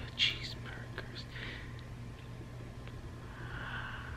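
Soft whispering, a few short breathy words in the first second and a half, over a faint steady low hum.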